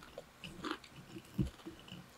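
Close-miked chewing and wet mouth sounds, soft and scattered, with a few small clicks, the loudest about one and a half seconds in.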